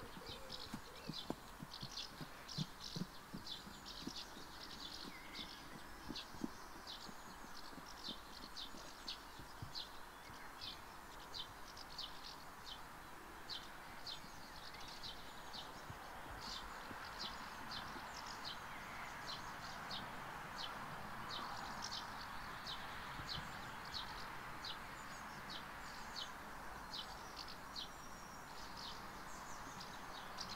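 A small bird chirping over and over, short high chirps about twice a second, over a faint steady outdoor hiss. A few soft low thuds in the first seconds.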